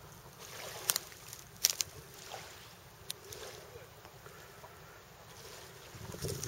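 Quiet ambience of a calm lakeshore, with a few sharp clicks in the first half, about four of them.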